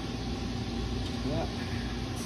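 A steady low mechanical hum runs throughout, with a faint even tone in it. A single short spoken "yeah" comes about a second in.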